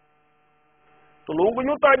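Faint steady electrical hum in a brief pause. A man's voice then resumes speaking Urdu a little over a second in.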